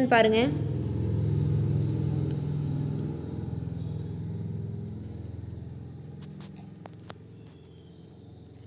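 A low rumble that slowly fades away over several seconds, with a few faint clicks near the end.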